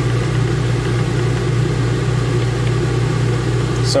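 Steady, loud, low machine drone with an unchanging hum.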